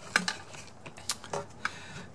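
A few light, irregular clicks and taps of a steel ball-bearing drawer slide as a drawer's rail is handled into it.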